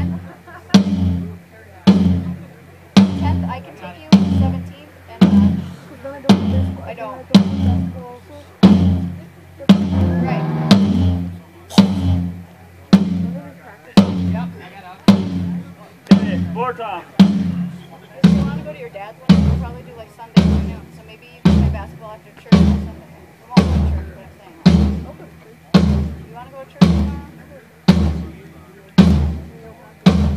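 A single drum of a drum kit struck on its own, over and over at an even pace a little faster than once a second, for a sound-check line check. About two-thirds of the way in the hits take on more deep bass.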